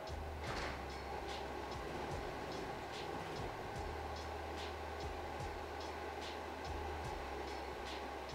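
Conventional inline duct fan running at full speed, a steady low hum under a rush of air, loud enough to read about 69 dB on a sound meter held beside it.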